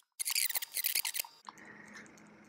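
Fibers being stripped from a hackle feather's stem between the fingers: a crisp, crackling rustle lasting about a second, then fading to faint hiss.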